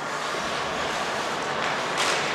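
Ice hockey play on an indoor rink: skate blades scraping and carving the ice in a steady hiss, with a sharp stick-or-puck clack right at the end.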